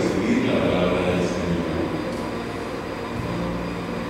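A man's voice over a PA system in a large hall, with a pause in the middle, over a steady low drone.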